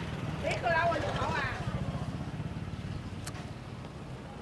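A small engine running steadily at idle, a low pulsing rumble throughout. A voice is heard briefly about half a second in, and a sharp click comes near the end.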